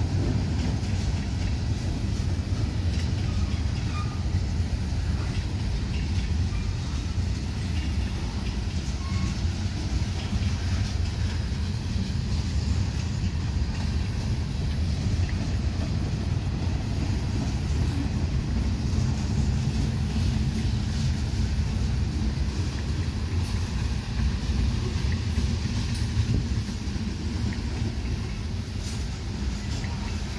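Freight cars of a Kansas City Southern manifest train rolling over a grade crossing: a steady low rumble of steel wheels on rail, with a few faint sharp clicks near the end.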